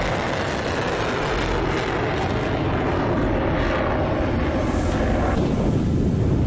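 A launched missile's rocket motor burning, a loud continuous rushing noise that holds steady as the missile climbs.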